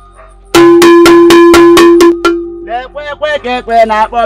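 A metal bell struck rapidly, about four strikes a second, ringing on one steady pitch for nearly two seconds. A voice follows in drawn-out, wordless sounds.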